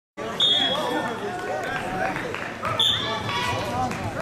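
Overlapping voices of spectators and coaches in a gymnasium, calling out and chattering at once. Two short, shrill high tones cut through, about half a second in and again near three seconds.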